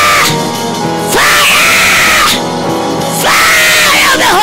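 A woman screaming in long cries, each rising quickly and then held on one high pitch for about a second, one ending just after the start, another about a second in and a third near the end. Background music plays steadily underneath.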